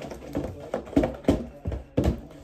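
About six sharp taps and knocks in two seconds: a pen being handled and tapped on paper at a tabletop while a number is written down.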